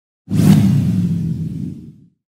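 Logo sting sound effect: a sudden loud whoosh over a low rumble, starting about a quarter of a second in and fading away over the next second and a half.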